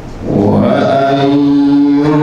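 A man's voice begins chanted Quran recitation about a third of a second in, drawing out one long melodic note.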